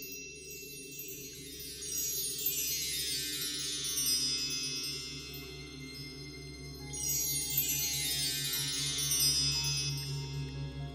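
Title-sequence music: two long downward cascades of wind-chime-like ringing tones, the second starting about seven seconds in, over a steady low sustained drone.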